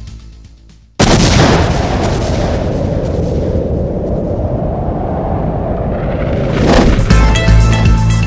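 Music fades out, then about a second in a sudden loud boom sound effect hits and dies away slowly in a long rumble over several seconds. Near the end a short swell leads into music with a steady low beat.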